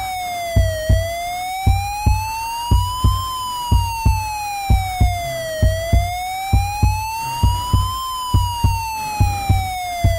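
Music with a siren wail: a single tone sliding slowly up and down, about one rise and fall every five seconds, over a steady pounding double-thump beat about once a second.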